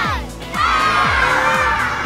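Children's voices call out the last count of a countdown, then break into a long group shout and cheer about half a second in, over a music track with a steady kick drum about twice a second.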